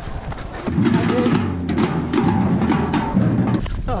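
Drum-led music with a steady beat, starting about a second in and stopping just before the end.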